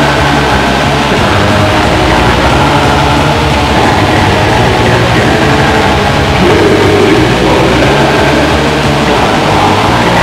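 Black metal recording: a loud, unbroken wall of distorted guitars over fast, dense drumming and a low bass line.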